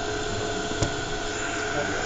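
A three-phase induction motor and the DC motor it drives, run by a direct-torque-control inverter, turning steadily: a constant whir with a few steady whine tones over it. A single short click comes a little under a second in.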